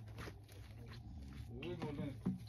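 Quiet stretch with a few faint clicks, then a short vocal sound with a bending pitch near the end.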